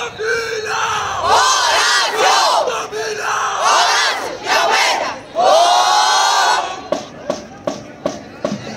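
A crowd of voices shouting and cheering in three waves, with many high shrieks overlapping, and a few sharp clicks near the end.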